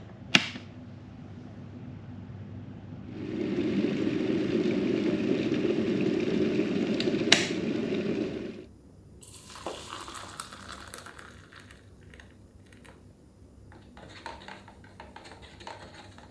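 Stainless-steel electric kettle switched on with a click, then the water heating inside it with a steady rushing rumble for about five seconds, with a sharp click shortly before the sound stops suddenly. Afterwards come quieter scattered clicks and light handling noises.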